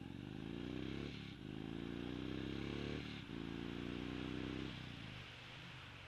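2014 Indian Chief Vintage's Thunder Stroke 111 V-twin accelerating hard through the gears on a 0–60 mph run: the engine climbs in pitch three times, with an upshift about one second in and another about three seconds in. Near five seconds the throttle closes and the engine drops back as the bike reaches sixty.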